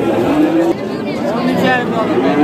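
Several people's voices talking over one another, with no clear words, in the general chatter of a crowded livestock pen.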